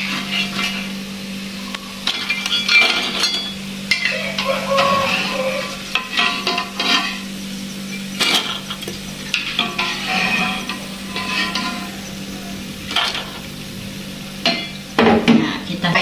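Metal spatula scraping and clinking against a wok and a wire strainer basket as crisp fried peanut crackers are lifted out of hot oil, with the oil sizzling in the wok. Irregular scrapes and clinks over a steady low hum.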